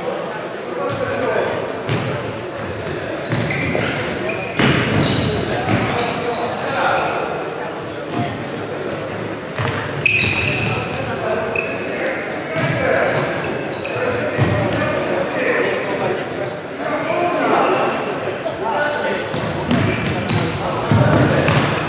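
Futsal play on a sports-hall floor: the ball being kicked and thudding on the boards, short high squeaks of shoes on the wooden court, and players shouting to each other, all echoing in the large hall.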